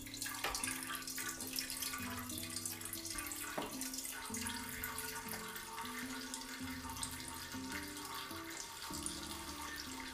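Whey draining in a thin, steady trickle from a hanging cheesecloth bag of cheddar curds into a pot of whey below.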